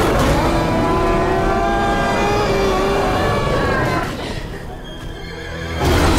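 Film sound effect of an Allosaurus roaring: one long, drawn-out roar of about four seconds, then a second loud roar breaking in near the end, with film score music underneath.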